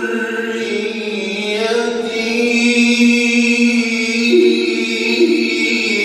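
A man's solo Quran recitation in the ornamented melodic (tahbeer) style, one long vocal line held on sustained notes that shift slowly between pitches.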